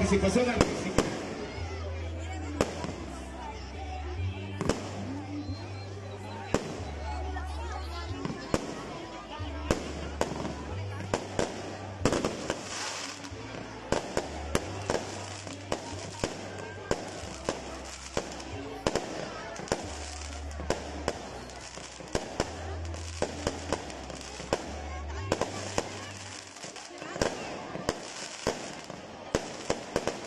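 Aerial fireworks going off in quick succession, a long run of sharp bangs and crackles, over music with a deep, steady bass line.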